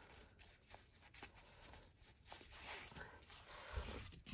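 Faint rustling of fluffy fleece fabric and cotton-like ribbon being handled as the ribbon is pulled through a sewn channel, with a few light taps. It grows a little louder in the second half.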